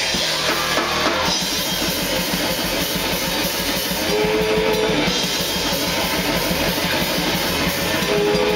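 Powerviolence band playing live: a drum kit with fast, dense drumming and electric guitar, loud and steady, with a held guitar note about halfway through.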